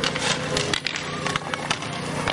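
Inline hockey play: repeated sharp clacks of sticks against sticks, puck and boards, over the steady noise of skate wheels rolling on the asphalt rink.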